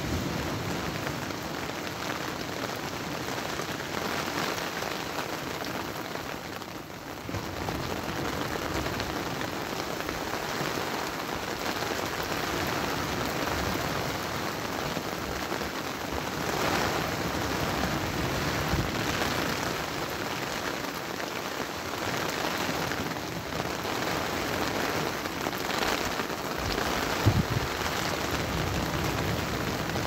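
Steady hiss of rain mixed with wind and breaking surf, swelling and easing in gusts. One short thump comes near the end.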